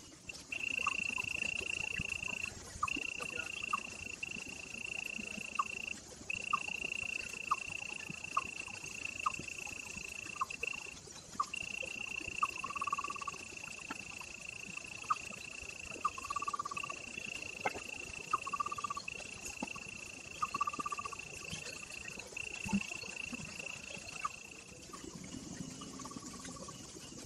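A steady, high-pitched insect trill that keeps going with a few brief breaks and stops near the end, with scattered short chirping calls beneath it.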